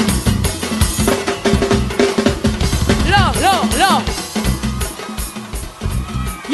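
Live soca music with a driving drum-kit beat and heavy bass drum. A little past the middle, four quick rising-and-falling tones ride over the beat.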